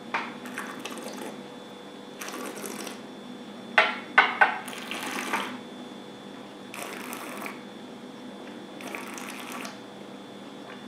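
Wet mouth sounds of a taster holding and swishing a mouthful of spirit: a sharp click as he sips, soft swishing or breathing sounds about every two seconds, and a quick run of three louder wet smacks about four seconds in.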